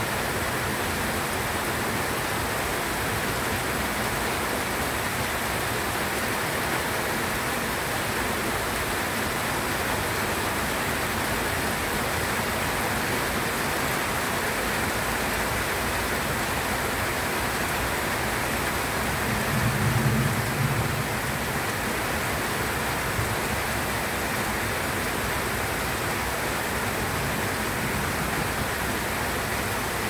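Steady rain falling on banana leaves and dense foliage, an even hiss of drops. About two-thirds of the way through there is a brief low rumble.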